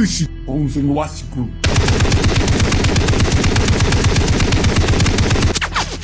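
Sustained machine-gun fire: one rapid, unbroken burst of about four seconds that cuts off abruptly, sprayed into the sniper's window.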